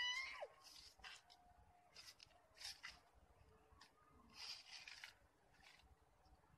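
Near silence with faint scattered rustles, after a short pitched call that rises and falls right at the start.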